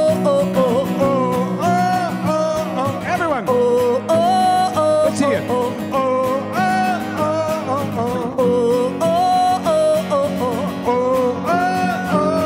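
Live acoustic song: several acoustic guitars strummed together under a sung melody in long rising and falling phrases.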